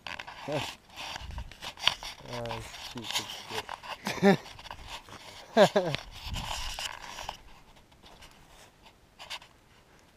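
Men laughing and making short, breathy, wordless vocal sounds, some sliding in pitch, over a hiss; both die away after about seven seconds.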